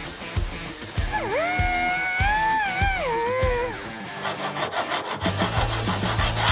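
Background music with a steady drum beat and a lead line that rises in pitch about a second in, holds, then slides down.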